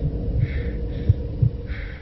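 Thriller trailer score: low pulsing thumps a little over twice a second, with a soft hiss swelling in and out above them.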